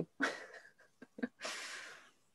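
A woman's short breathy laugh, then a long audible breath through the microphone.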